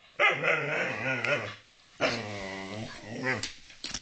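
Whippet in a play bow giving two long, drawn-out growly barks, each about a second and a half, inviting another dog to play.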